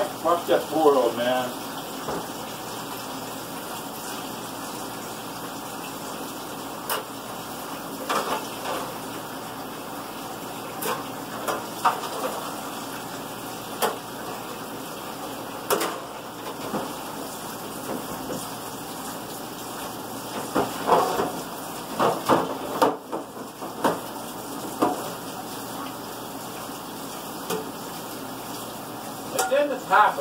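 Dishes being washed in a kitchen sink: plates and utensils clink and knock at irregular intervals over the steady hiss of running tap water.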